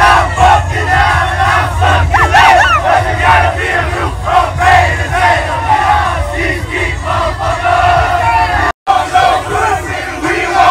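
A crowd of young men shouting and chanting together at full voice, many voices overlapping, with a steady low rumble underneath. The sound drops out for an instant near the end, then the chanting carries on.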